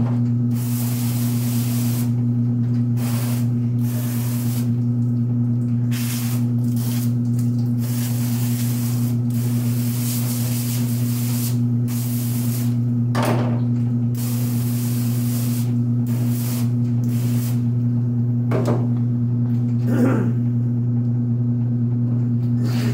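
Garden-hose spray nozzle hissing into a stainless steel sink in repeated on-and-off bursts, some brief and some several seconds long, as the sink is rinsed down. A steady low machine hum runs underneath throughout.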